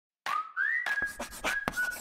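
A whistled tune, one note gliding upward and then held notes, over a rapid, irregular run of short scratchy strokes like chalk being written on a chalkboard.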